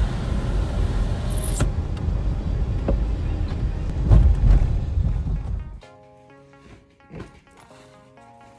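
A car's low, steady rumble of engine and road noise heard inside the cabin while driving, cutting off about six seconds in. Quiet background music with sustained notes follows.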